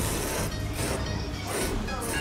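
Ramen noodles being slurped: a run of short, hissing sucking pulls through the lips, several in two seconds.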